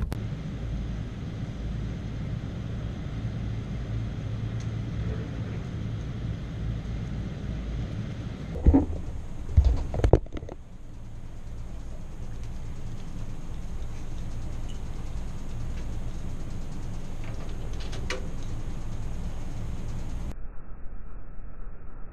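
Steady low rumble of outdoor background noise, broken by a few loud knocks about nine to ten seconds in.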